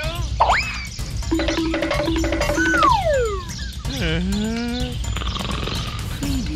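Cartoon-style comedy sound effects over background music: a quick rising whistle, three short repeated notes, a long falling whistle, then a swooping boing-like tone near the end.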